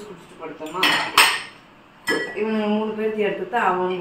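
Stainless-steel dishes and glass tumblers clattering and clinking as they are lifted out of a dish rack, with the sharpest clinks about a second in.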